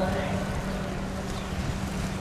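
Wind buffeting the microphone over a low outdoor rumble, with a steady low hum underneath.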